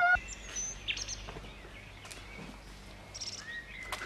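Birds chirping, faint: a few short, separate calls and a brief rapid trill near the end, over a low steady hum.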